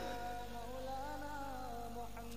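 A faint voice humming a slow, wavering tune.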